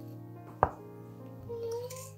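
One sharp click, a small wooden spoon knocking against a glass jar while scooping out granules, with a fainter tap near the end, over soft background music.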